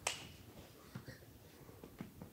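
One sharp click right at the start, then a few faint ticks and soft handling noises from a marker pen and a cardboard answer board.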